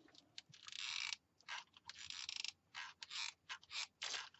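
Hot glue gun in use, its trigger squeezed in a run of about six short strokes as the feed mechanism pushes the glue stick through.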